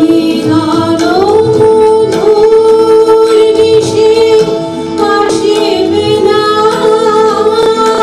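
Women singing a Bengali song live in long held notes, accompanied by harmonium, tabla and violin.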